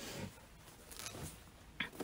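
Faint rustling of a blazer's fabric as it is handled and folded by hand, with a couple of short clicks near the end.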